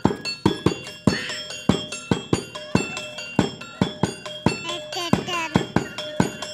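Topeng monyet street-show percussion: a steady beat of drum and small gong strikes, about three a second, over ringing metallic tones.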